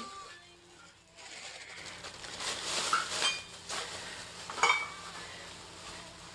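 Someone rummaging through a box of small household knick-knacks: rustling, then hard objects clinking together with short ringing, the sharpest clink a little past halfway.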